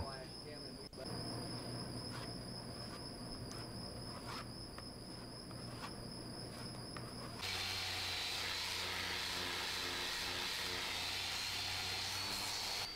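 Faint scraping of a plastic spreader working fairing putty over a fiberglass hull. About seven seconds in, this cuts suddenly to a small air-powered random orbital sander with a 36-grit pad running fast and steadily on the fiberglass, a hiss with a thin high whine.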